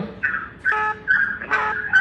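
A high, steady whistling tone that comes in short pulses, starting and stopping four or five times in two seconds.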